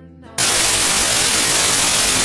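Soft background music breaks off about half a second in into a loud, even hiss of static that lasts nearly two seconds and then cuts off suddenly. The static is a glitch standing in for the camera's battery going flat.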